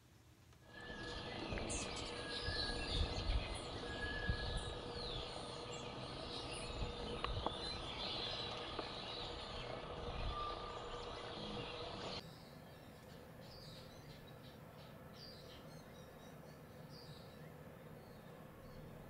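Quiet outdoor ambience with small birds chirping over a steady background hiss. About twelve seconds in it cuts to a quieter ambience with fainter, scattered chirps.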